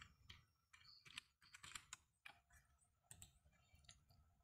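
Faint computer keyboard keystrokes and mouse clicks: a dozen or so short, quiet clicks, irregularly spaced, over near silence.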